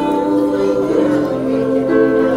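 A high-school choir singing in several parts, holding chords, with the notes changing about a second in.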